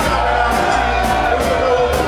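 A live reggae band plays, with a sung vocal line over strong bass and recurring drum hits.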